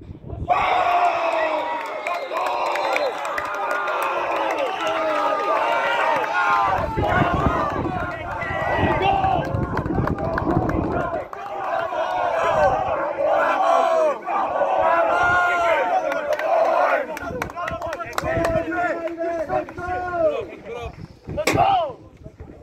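A group of young footballers shouting and cheering together, many excited voices overlapping loudly, celebrating a goal.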